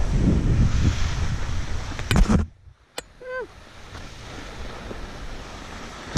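Wind buffeting a helmet camera's microphone while skiing downhill, a loud rumbling rush that cuts out abruptly about two and a half seconds in. After a click and a brief pitched sound, a quieter steady hiss of wind carries on.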